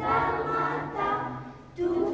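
A group of children singing together in a choir, holding long notes; one phrase fades out about a second and a half in and the next starts just before the end.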